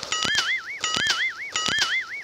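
An electronic comedy sound effect: a warbling, wavering tone played three times in quick succession, with sharp clicks through each repeat.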